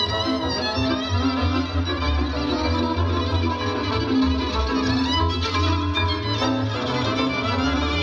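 Live folk band music: a violin leads over cimbalom and a double bass, with the bass keeping a steady pulse.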